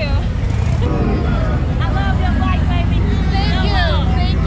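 Motorcycle engine rumbling steadily, with people's voices talking and calling out close by.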